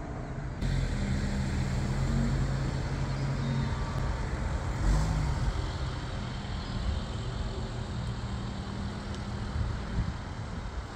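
A car engine running with a steady low hum, mixed with traffic noise, and a brief louder swell about halfway through.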